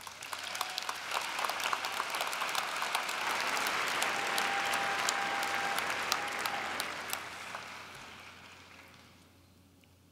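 Audience applauding. The clapping builds over the first second, holds for several seconds, then dies away toward the end.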